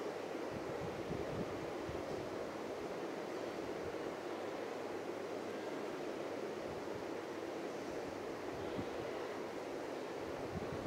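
Steady rushing background noise, with a few faint low knocks now and then.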